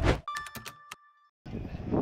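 Animated logo sting: the tail of a whoosh, then a short bright chime with a few clicks. After a brief silence, outdoor ambience with background voices starts about one and a half seconds in.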